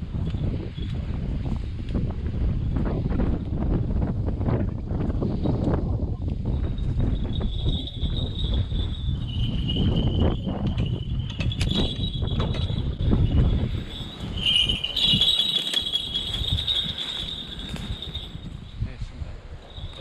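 Wind buffeting the microphone while walking along a woodland path, with scattered footstep crunches. From about seven seconds in a high, thin, steady sound joins in, strongest a little after the middle.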